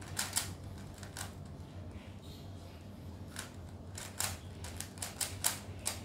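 A plastic 3x3 speed cube being turned by hand, its layers clicking in quick, irregular runs, with a quieter lull of about two seconds partway through.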